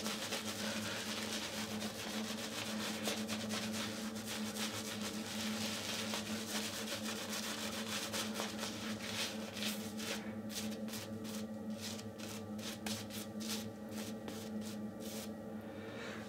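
A 24 mm Manchurian silvertip badger shaving brush rubbing and swirling wet soap lather over stubble on the face. From about ten seconds in it makes quicker, separate brushing strokes. A steady low hum runs underneath.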